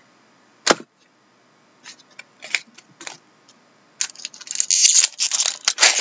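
A few light clicks of cards being handled, then from about two-thirds of the way in a dense crinkling and tearing as a foil trading-card pack wrapper is ripped open.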